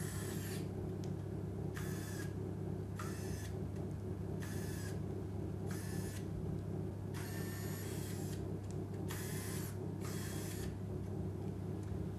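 Electric finger motors of an i-LIMB bionic hand whirring in short high-pitched bursts, about seven times, as the powered fingers open and close, over a steady low hum.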